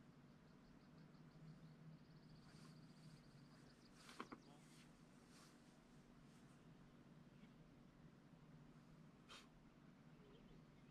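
Near silence: a faint steady background, with a quick run of soft high ticks in the first few seconds and a few short sharp clicks, the loudest about four seconds in and another near the end.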